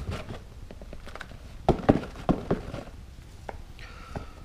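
Used coffee grounds being shaken out of a carton onto the compost in a plastic worm bin: soft rustling with a few sharp knocks about two seconds in, as the carton is knocked to empty it.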